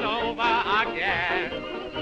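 Early jazz band recording: a small café band accompanies a man's wordless melody line, which wavers with strong vibrato.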